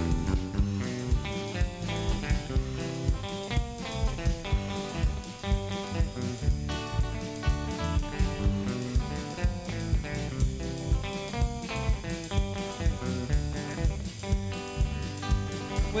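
A live band plays an instrumental passage of a country gospel song: electric guitar and electric bass over a drum kit keeping a steady beat.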